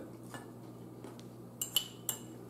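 A metal fork clinking a couple of times against a small ceramic bowl near the end, the sharper clink ringing briefly.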